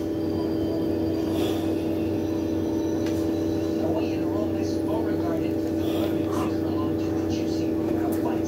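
A steady hum made of several fixed tones, unchanging throughout, with faint voices underneath.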